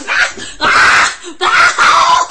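A boy screaming and wailing in distress in about three loud, ragged bursts: his reaction to pepper spray.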